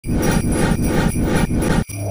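Intro jingle of jingle bells shaken in a steady rhythm, about five beats, cutting off abruptly near the end.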